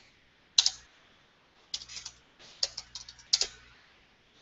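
Typing on a computer keyboard: a single keystroke about half a second in, then three quick runs of keystrokes.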